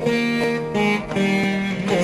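Veena played in Carnatic style: a run of plucked notes, some of them sliding in pitch.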